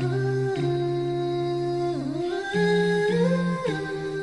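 Wordless background vocal music: voices humming long held notes in harmony, moving slowly from one pitch to the next with short glides.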